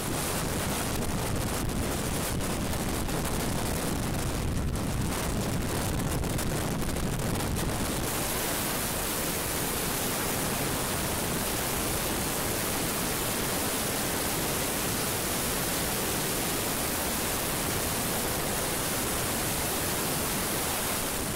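Steady rush of freefall wind on the camera's microphone, a skydiver falling through the air at high speed, turning hissier about eight seconds in.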